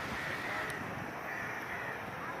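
Crows cawing, a couple of harsh calls, over a steady low background rumble.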